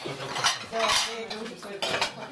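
Cutlery and dishes clinking at a meal table: several sharp clinks of spoons and forks against plates, with faint voices behind.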